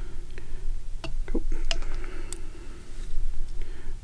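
A few small sharp clicks and a faint rustle of thread and tools being handled at a fly-tying vise, over a steady low hum.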